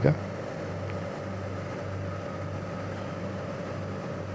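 Steady low hum of a running York chiller plant, with a faint thin higher tone over it.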